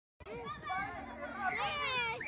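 A crowd of children shouting and chattering, many voices overlapping with high, sliding calls. It starts abruptly after a brief silence.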